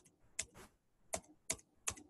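About five sharp computer key clicks in quick, uneven succession, pressed to advance a slide presentation several slides at once.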